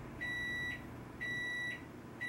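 Microwave oven's done signal: two high-pitched beeps, each about half a second long, one a second, signalling that the heating cycle has finished.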